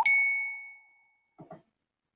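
A single bright ding, struck once and fading out over about a second with a few clear ringing tones: an edited chime cueing the answer to a quiz question.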